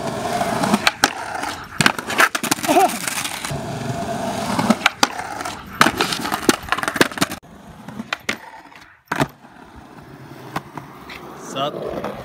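Skateboard wheels rolling over rough concrete, with repeated sharp clacks of the tail popping and the board hitting the ground, for about seven seconds. After that it goes quieter, with only a few single knocks.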